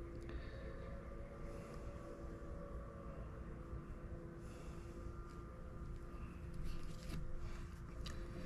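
Faint rustling and crinkling of a damp paper towel being unrolled and a plastic zip bag being handled, over a steady background hum.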